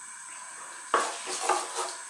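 Black mustard seeds sizzling in hot sunflower oil in a pan. About a second in, a wooden spatula starts stirring them, knocking and scraping against the pan.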